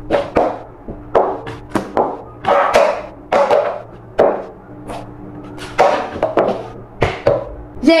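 Upturned plastic bowls being lifted, slid and set down on a tabletop, a string of irregular knocks and scrapes. Several bowls are tapped on purpose so that the one hiding a bonbon can't be picked out by ear.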